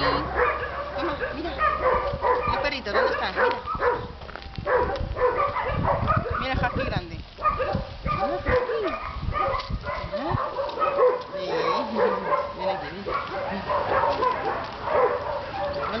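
Several dogs barking and yipping, their calls overlapping in a continuous din.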